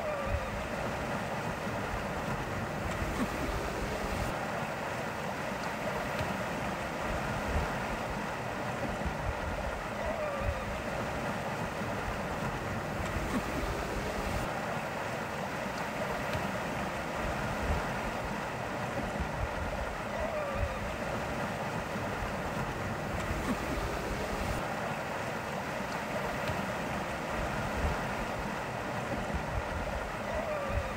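Steady rush of water and wind from a sailboat under way under sail, even in level throughout, with small scattered peaks.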